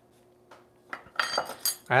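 A few sharp metallic clinks with a brief bright ring about a second in, as small metal kitchen items are handled and set down on the counter.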